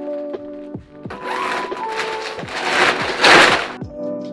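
Crinkling and rustling of a large woven plastic bag being handled and stuffed with clothes, building from about a second in and loudest near the end, over background music.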